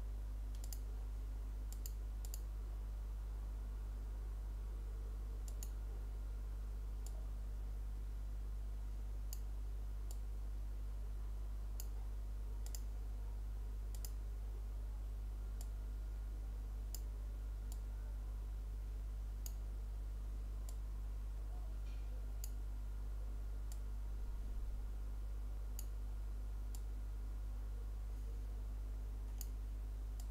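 Computer mouse clicking at irregular intervals, about one click every second or so, over a steady low electrical hum.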